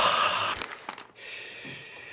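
A man's loud, breathy exhale, like an exaggerated sigh, trailing off about a second in into a softer steady hiss.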